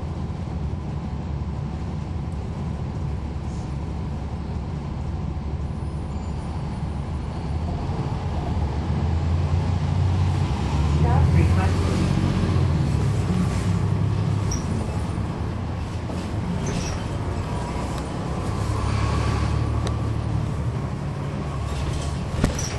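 Cummins ISL9 inline-six diesel of a NABI 40-SFW transit bus with a ZF Ecolife six-speed automatic, heard from inside the cabin. It runs as a steady low rumble that grows louder from about eight seconds in, peaks a few seconds later, eases off, then swells again near the end.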